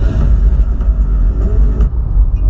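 Cabin rumble of a 2008 Volkswagen Polo 1.6 driving on a dirt road: a heavy, steady low rumble from the engine and tyres.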